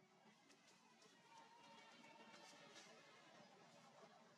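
Near silence: faint, even background hiss with a few soft ticks.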